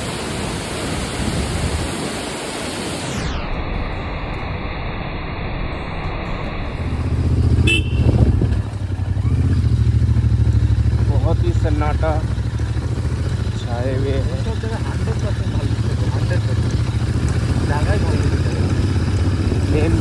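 A waterfall's steady rushing for about three seconds, which then turns abruptly muffled. From about seven seconds in comes the low, steady running of a Royal Enfield Interceptor 650's parallel-twin engine as the motorcycle rides along a gravel track.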